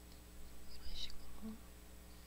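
A person's brief, soft, breathy whisper close to the microphone, about a second in.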